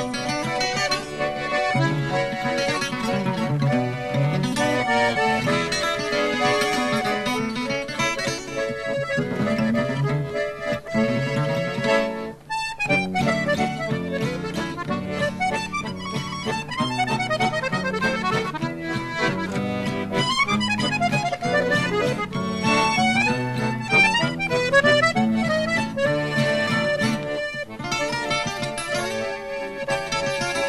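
Chromatic button accordion playing a melody with acoustic guitar accompaniment. The music drops away for a moment about twelve seconds in, then carries on.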